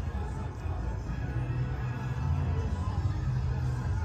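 Parade music from a television's speakers, recorded in the room, with a steady, heavy bass line.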